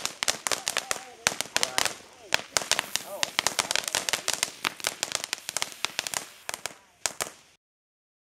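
Red Star firework fountain crackling: a fast, irregular run of sharp pops that thins out and grows fainter, then cuts off suddenly near the end.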